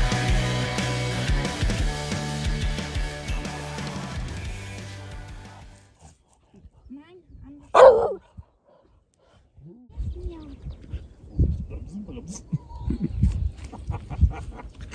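Rock background music fading out over the first five seconds or so. Then dogs playing with a stick: a few short dog noises, one loud bark about eight seconds in, and more short dog sounds near the end.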